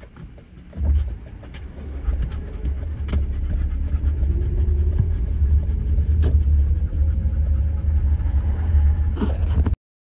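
Steady low rumble of a car driving at highway speed, heard from inside the cabin, with scattered small clicks over it. It sets in about a second in and cuts off suddenly just before the end.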